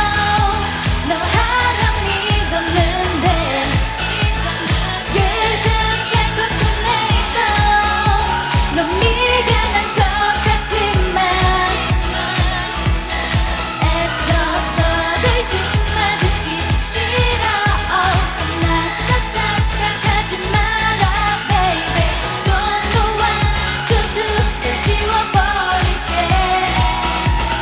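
Korean pop dance song with female vocals sung over a steady, driving beat.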